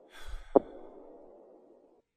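Cartoon giant footstep sound effect: a short whoosh with a low rumble, then one sharp thud about half a second in, over a faint steady background hum.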